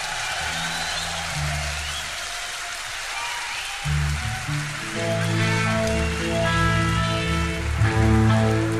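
Electric guitar and bass of a live rock band ringing on just after a song's final crash, over a noisy wash of audience applause. About five seconds in, sustained guitar and bass notes begin to ring steadily.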